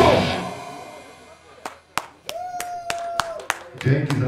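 A punk rock song ending live, the band's last chord dying away over about a second, followed by sparse, scattered clapping from a small audience. A single steady high tone is held for about a second in the middle.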